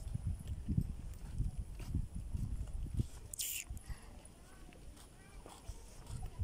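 Footsteps on a concrete walkway, about two a second, fading after about four seconds, with a brief hiss a little past halfway.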